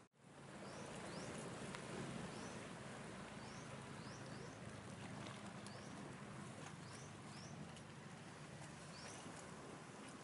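Steady wash of gentle surf on a rocky shore, with a bird giving short rising chirps over and over, about one a second.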